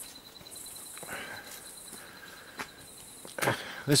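Crickets calling at night: a steady, rapidly pulsing high trill, with patches of even higher buzzing that come and go. A few soft knocks sound under it.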